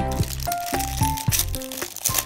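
Background music: an instrumental tune of held notes that change every fraction of a second.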